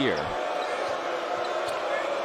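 Steady arena crowd noise, with a basketball being dribbled on the hardwood court.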